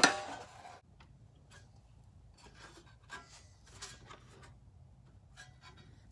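A few faint, light clicks spaced out over quiet room tone.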